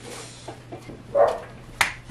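A dull bump about a second in, then a single sharp click near the end as an electric plug is pushed home in a wall socket.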